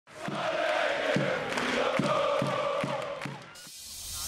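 A crowd chanting a sustained sung note over regular drum hits, fading out shortly before the end.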